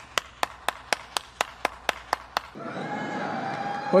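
One person clapping their hands at an even pace, about four claps a second, stopping about two and a half seconds in. A steady hum follows until the end.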